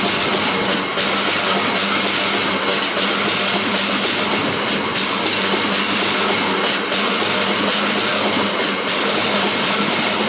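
Freight train box wagons rolling past at close range: a steady loud rumble and clatter of steel wheels on the track, with a steady low hum underneath.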